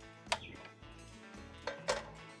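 A cast iron skillet set down with a single sharp knock onto the grate of a portable butane stove about a third of a second in, then two sharp clicks near the end from the stove's knob as it is turned to light the burner. Faint background music runs underneath.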